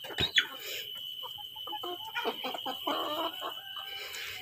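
Chickens clucking in a run of short, quick notes, with a sharp knock just at the start.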